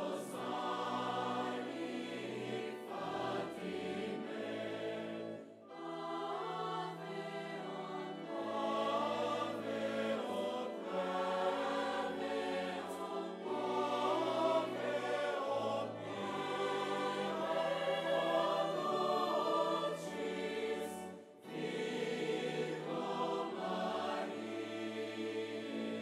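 A choir singing a slow hymn in long, held chords over a steady bass line, with short breaks between phrases about six and twenty-one seconds in.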